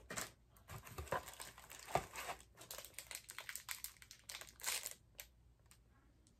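Packaging crinkling and rustling as it is handled, a run of small irregular crackles and clicks that stops about five seconds in.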